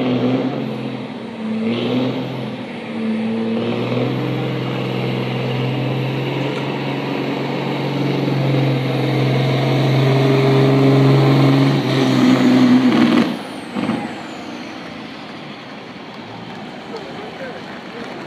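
Volvo semi truck's diesel engine at full throttle dragging a weight sled. It revs in surges over the first few seconds, then runs steady and grows louder under the heavy load until the throttle cuts off sharply about 13 seconds in. A brief air-brake hiss follows about a second later.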